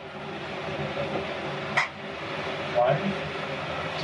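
A steady mechanical hum at the aircraft door, with a sharp click about two seconds in as the aisle wheelchair's shoulder straps are fastened.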